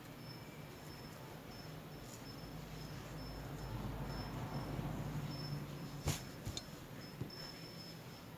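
A high, thin chirp repeating about twice a second, insect-like, over a faint low hum that swells and fades in the middle. A sharp click about six seconds in is the loudest sound, followed by a couple of lighter ticks.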